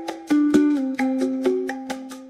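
Calm plucked guitar music: a melody of single notes, each plucked and left to ring out.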